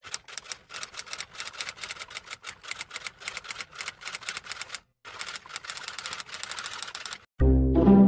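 Typewriter sound effect: rapid clacking of keys, broken by a short pause about five seconds in, then more clacking. Music with deep bass notes comes in near the end.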